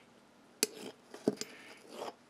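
Steel file drawn and tapped against the end of a case-hardened steel tool in a file test of its hardness, giving three short metallic clicks a little over half a second apart.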